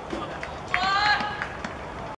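A person shouting one call of about half a second, about three-quarters of a second in, with a few light knocks and faint outdoor background around it.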